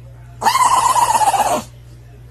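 Small dog howling: one long call of a little over a second, starting about half a second in, holding a steady pitch and dropping slightly as it ends.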